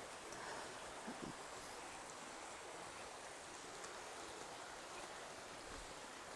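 Faint, steady rush of a shallow stream flowing over rocks.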